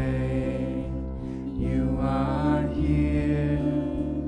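Live church worship band playing a slow song, with voices singing long held notes over acoustic and electric guitar and keyboard.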